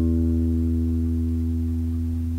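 A single low note on a five-string electric bass, plucked on the D string, sustaining and slowly fading.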